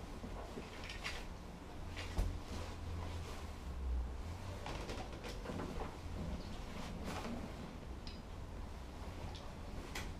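Scattered soft clicks and knocks over a low, steady room rumble: a manual wheelchair being turned and rolled on a hardwood floor, with a dog shifting nearby.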